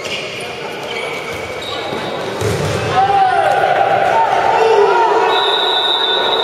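Sounds of a handball game echoing in a sports hall: a ball thuds about two and a half seconds in, then players' shouting and squeaks grow louder.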